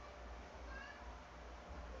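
Quiet room tone with a faint, brief high-pitched sound a little under a second in.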